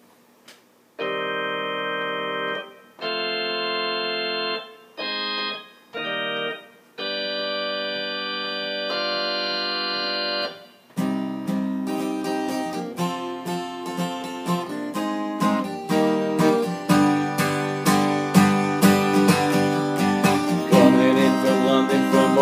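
Instrumental intro of a country-rock song. A keyboard plays six sustained organ-style chords, each held steadily for one to two seconds and then cut off. About eleven seconds in, strummed guitar comes in over the keyboard and the band's playing grows steadily louder.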